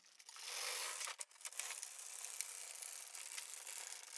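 Brother LK150 knitting machine's plastic carriage being pushed along the needle bed, knitting rows: a steady rattling rustle of the needles being worked, with light clicks and a brief break about a second in.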